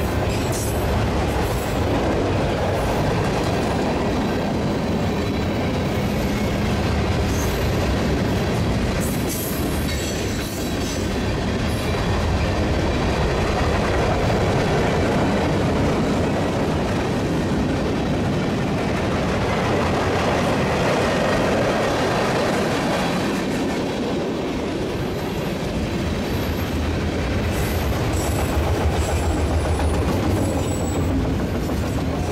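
Freight cars of a mixed manifest train, tank cars, boxcars and autoracks, rolling steadily past: a continuous rumble with the clatter of steel wheels on rail. A few brief high-pitched wheel screeches come about ten seconds in and near the end.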